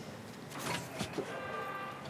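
A sheet of paper rustling briefly, then a short steady electric buzz from a door buzzer in the last moments before the door is answered.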